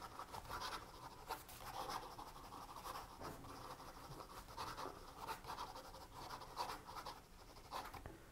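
A Pelikan M600 fountain pen's 14k gold fine nib writing fast cursive on slightly textured paper: a faint, irregular run of short scratchy strokes. The light scratchiness comes from the paper's texture, not from a scratchy nib.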